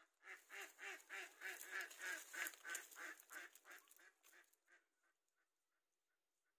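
A waterfowl calling in a quick run of repeated notes, about three a second, loudest in the middle and fading away after about four seconds.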